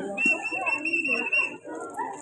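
A high whistle held for about a second and a half, over voices.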